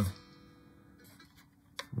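A quiet pause with a faint steady hum, broken by one short sharp click near the end.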